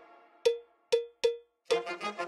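End-screen music sting: three sharp struck notes on one pitch, each ringing briefly about half a second apart, then a quicker, fuller run of notes near the end.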